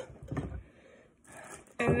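A woman's speaking voice trailing off, then a short pause holding only faint brief noises, before she starts speaking again near the end.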